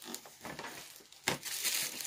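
A gift box being handled and set down, with rustling throughout and a single knock a little past halfway.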